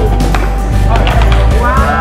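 Wooden mallets striking a hollow chocolate dessert sphere, a few sharp knocks and cracks as the shell breaks open, over background music.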